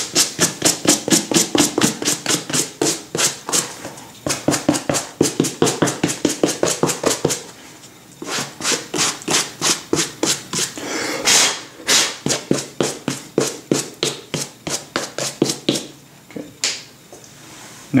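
Suede brush scrubbing the suede leather of a cowboy boot in quick back-and-forth strokes, about five a second, in runs broken by brief pauses. The brushing clears loose suede debris off the boot before a protector is sprayed on.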